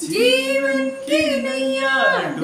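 A man and a woman singing a Hindi Christian worship song together, unaccompanied, in two long held phrases with a short break about a second in.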